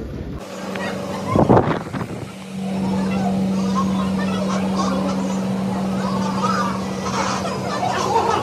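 A steady low mechanical hum sets in about two and a half seconds in and holds on, after a short loud noise about a second and a half in, with faint voices of people around.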